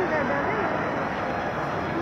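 Steady background din with faint, indistinct voices.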